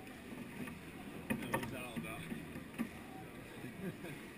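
Pool water lapping and sloshing right at the microphone against the pool wall, with a cluster of sharp splashy knocks about a second and a half in and another near the three-second mark.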